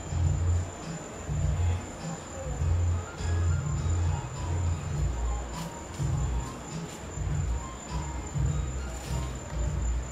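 Night insects, crickets, keeping up one steady high-pitched trill, over irregular low rumbling.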